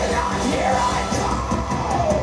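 Live heavy metal band playing, with a male lead vocalist singing in a loud, yelled voice over guitars and drums; his pitch slides up and holds across the two seconds.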